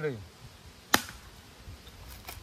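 One sharp chop of a machete blade striking a whole coconut to split it open, about a second in.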